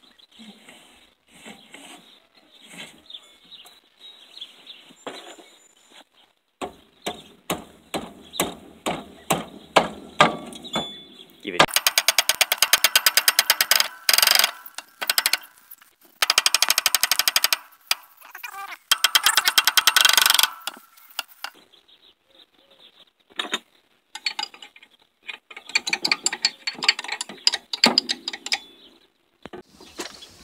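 Ratchet wrench clicking while backing rusty bolts out of an electric golf-cart drive motor. It starts with slow single clicks a few per second, then comes in three runs of rapid clicking about a second or two each, with scattered clicks near the end.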